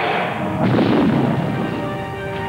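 A sledgehammer smashing a giant video screen, played as an explosion sound effect: a rumbling blast about half a second in that fades over the next second, with music under it.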